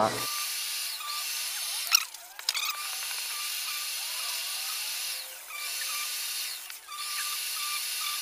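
A flexible sanding block with 80-grit paper is pushed by hand over cured body filler on a car fender, making a steady scratchy hiss. The hiss breaks off briefly about two seconds in, about five seconds in and near seven seconds, where the strokes change.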